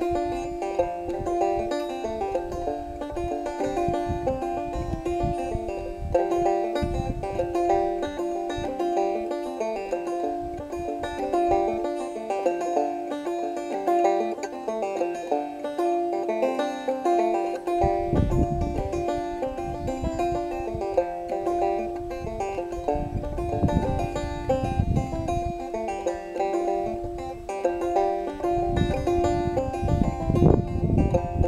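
Solo banjo playing a lively old-time tune, a steady stream of quick plucked notes. Low rumbles come in underneath at times, mostly in the second half.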